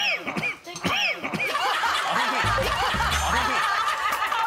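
A group of people laughing and chuckling together: short separate laughs at first, then several voices overlapping in steady laughter from about a second and a half in. A low hum runs for about a second partway through.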